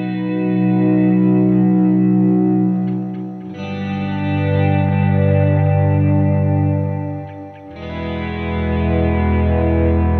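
Fender Jazzmaster electric guitar playing three long sustained chords through a Roland Space Echo RE-201 tape echo. The second chord comes in about three and a half seconds in and the third near eight seconds, each swelling up in volume after a brief dip.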